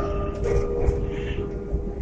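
Electronic chime notes of a Baku metro station melody, two held notes with a second one joining about half a second in, slowly dying away over the low running rumble of a metro train.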